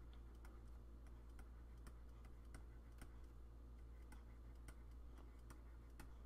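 Near silence with faint, irregular clicks, about two a second, of a stylus tapping a pen tablet while handwriting, over a low steady hum.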